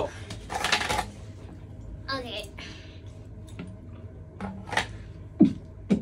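Scattered beatbox mouth sounds: a breathy burst, a short gliding vocal sound, then a few separate clicks and low kick-like thumps that grow stronger near the end.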